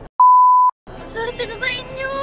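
A single electronic beep at one steady pitch, lasting about half a second and set between two short gaps of silence, like a censor bleep edited into the soundtrack. Voices and laughter come back about a second in.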